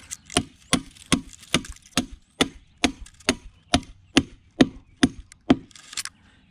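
Hammer driving a long landscape-edging spike through the edging into loose soil: about fourteen evenly paced blows, roughly two a second.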